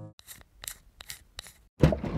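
A run of about six short, sharp clicks or snips over a second and a half, then a sudden loud hit near the end that opens into a burst of noise.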